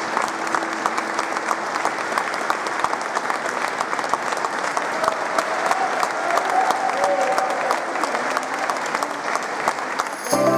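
An audience applauding steadily, a dense patter of many hands clapping.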